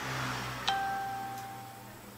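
A single steady electronic-sounding tone, about a second long, starting with a click just under a second in, over a low hum.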